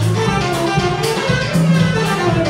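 Live small jazz combo playing, with plucked upright bass notes under the drum kit's cymbal strokes and a line of melody notes above.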